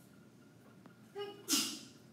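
A person sneezing once: a brief high-pitched 'ah' a little over a second in, then a sharp hissing burst.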